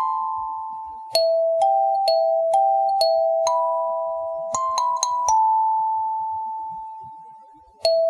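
Background music: a kalimba playing a slow melody of single plucked notes that ring and fade. A run of notes is followed by one long note dying away, and a new note starts near the end.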